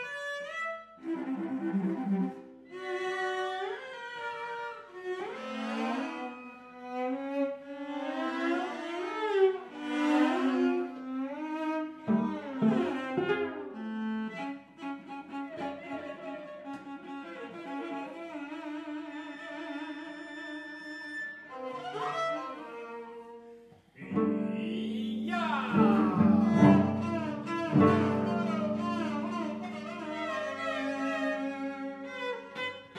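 A quartet of cellos playing a contemporary classical piece. Many notes slide and swoop in the first half, then long notes are held. Near the end there is a brief hush, followed by a loud entry of all four instruments together.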